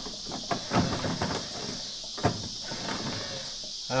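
Windshield wiper motor and its crank-arm linkage running, with a few irregular clunks and clicks over a steady hiss. The owner reckons something in it was in a bind and broke.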